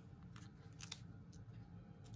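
A few faint clicks and crackles of small foam adhesive dimensionals being picked and peeled from their backing sheet.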